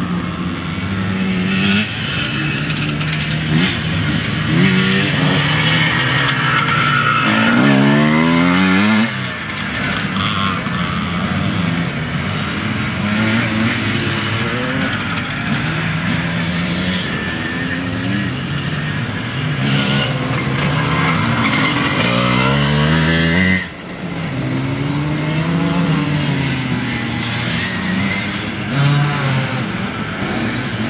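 Classic enduro motorcycles running on an off-road course, their engine notes rising and falling with throttle and gear changes. One engine climbs steeply in pitch about eight seconds in, and the sound drops off suddenly about two-thirds of the way through.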